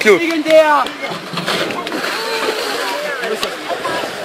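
A loud shout at the start, then a steady babble of several people's voices talking and calling.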